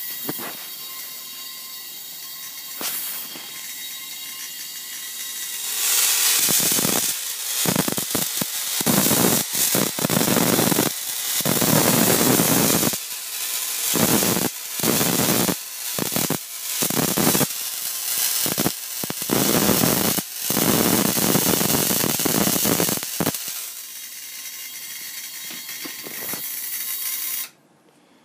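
Miniature Tesla magnifying transmitter running with its output free: a steady hissing buzz, then from about six seconds in loud crackling sparks from the drink-can topload, in irregular bursts as a hand-held wire is brought near it, until about three-quarters of the way through. It falls back to the steady hiss and cuts off abruptly just before the end.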